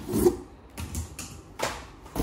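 Handling noise as a plastic vacuum cleaner hose and wand are lifted out of a cardboard box: a few short rustles and light knocks, the loudest just after the start.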